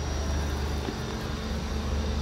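A steady low hum with a thin, steady high-pitched whine above it.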